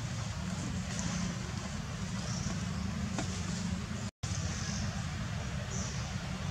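Steady outdoor background noise: a low rumble under a faint hiss, with no distinct event, dropping out completely for an instant a little after four seconds.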